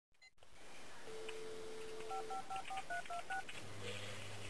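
Telephone dial tone, then seven quick touch-tone key beeps as a number is dialled.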